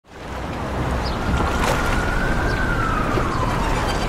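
A steady wash of outdoor noise fades in quickly at the start, with one thin high tone that rises slightly and then slides slowly down in pitch through the second half.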